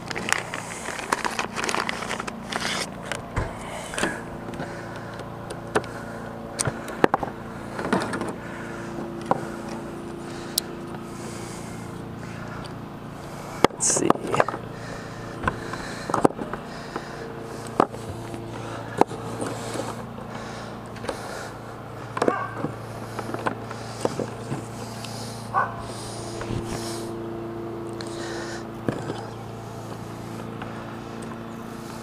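Plastic MC4 solar-cable connectors and inline fuse holders being handled: scattered sharp clicks and short knocks as the connectors are pulled apart and pushed together, with cable rustling and scraping. A steady low hum runs underneath.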